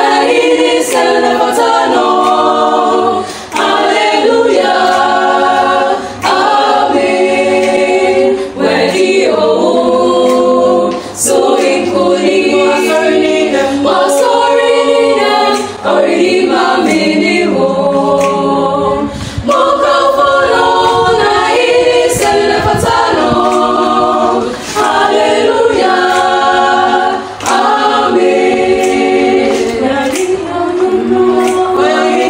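A choir of voices singing without instruments, in phrases of a few seconds each with short breaths between them.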